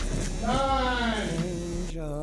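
A drawn-out vocal sound, about a second and a half long, whose pitch rises slightly and then falls.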